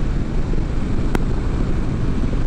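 Triumph Street Twin 900's parallel-twin engine running steadily at cruising speed, mixed with wind and road rush. There is a single short click a little over a second in.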